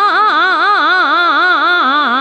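A woman's voice singing a fast taan in Raag Bhairav, the pitch sweeping up and down about four times a second over a steady drone.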